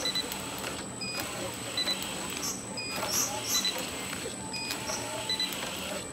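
Bottle labelling line running: conveyor and label applicator with a steady hum and a thin high whine. Short high chirps and clicks recur about once a second as bottles pass through.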